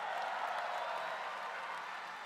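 Crowd applauding, swelling slightly and then slowly fading.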